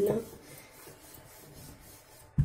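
Wooden rolling pin rolling paratha dough on a stone rolling board: a faint, steady rubbing.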